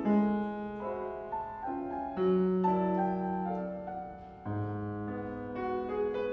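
A concert grand piano plays alone, in slow, sustained chords of an art-song accompaniment between the singer's phrases. A new low chord enters about four and a half seconds in.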